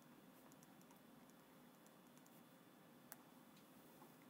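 Near silence with faint scratches and ticks of a pen writing and circling on paper, and one sharper small click about three seconds in.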